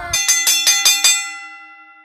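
A bell-like chime: a quick run of about six bright strikes in the first second, whose tones then ring on and fade away.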